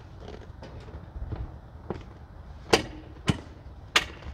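A motorcycle seat being set onto a Honda Rebel 1100 and pressed into its mounts, with three sharp knocks in the second half as it seats against the frame.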